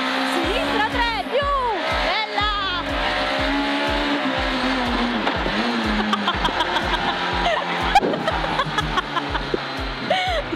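Rally car engine heard from inside the cockpit, revving hard through the gears on a tarmac special stage, with a voice and background music mixed over it.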